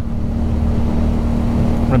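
Aprilia Dorsoduro's V-twin engine running at a steady road speed, with wind noise over the helmet-camera microphone.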